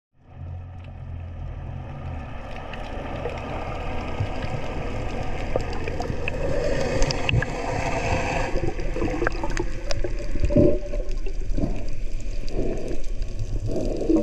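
Underwater ambience picked up by a submerged camera: a muffled rushing and gurgling of water and bubbles. It grows louder over the first several seconds and carries scattered sharp clicks and short bubbly gurgles in the second half.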